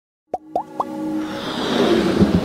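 Electronic intro sound effects: three quick rising bloops in the first second, then a synth riser that swells steadily louder.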